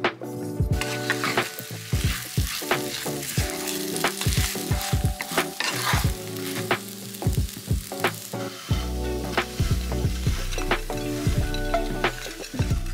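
Potato gnocchi frying in oil in a nonstick pan, sizzling steadily from about a second in, while a wooden spatula stirs them with short scraping knocks against the pan. Light music plays underneath.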